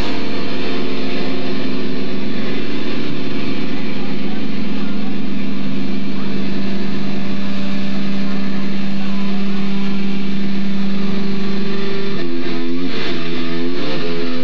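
A heavy rock band playing live, its distorted electric guitar holding one long droning note for about eleven seconds. Near the end a chopped, rhythmic guitar riff starts.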